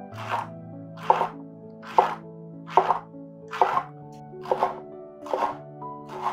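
Chef's knife slicing through leek and striking a wooden cutting board, seven cuts at a steady pace of a little under one a second. Background music with long held notes plays underneath.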